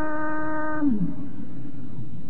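A male Quran reciter's voice holds one long, steady note of melodic recitation, then slides down in pitch and stops about a second in. A steady background hiss and murmur of the recording carries on after it.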